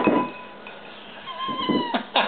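African grey parrot knocking its beak sharply against a ceramic bowl at the start, then giving a drawn-out meow-like call near the end that dips slightly in pitch.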